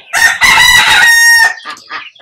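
A rooster crowing once, loudly: a single call lasting a little over a second.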